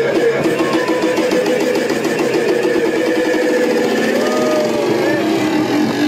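Boat engine running steadily, with people's voices over it.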